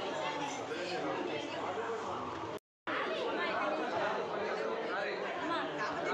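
Chatter of a crowd indoors: many voices talking at once, with no single speaker standing out. The sound cuts out for a moment about two and a half seconds in.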